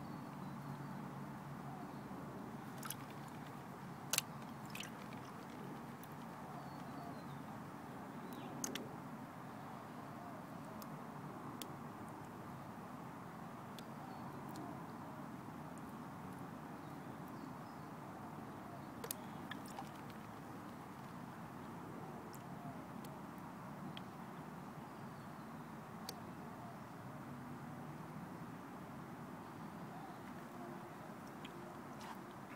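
Water sloshing and washing in a blue plastic gold pan as it is swirled, carrying fine gravel down over the pan's finer riffles. A few sharp clicks of small stones against the plastic are heard through it.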